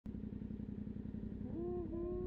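Yamaha MT-07 parallel-twin engine idling with an even, low pulsing beat. A wavering high-pitched tone joins about one and a half seconds in.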